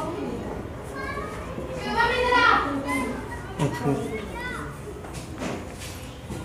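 Children's voices in the background: a few short, high calls and bits of chatter, loudest about two seconds in.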